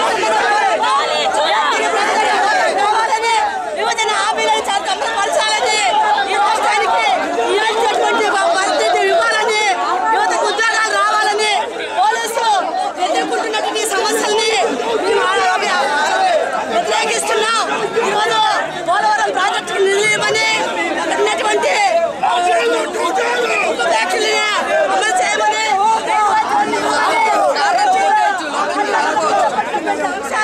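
A crowd of people shouting and talking over one another at once, many raised voices overlapping without pause.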